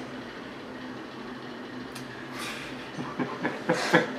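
Steady low background hiss of room tone, with no distinct event.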